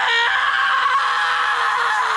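One long, anguished scream from a crying anime character, held near one pitch and sinking slowly lower toward the end.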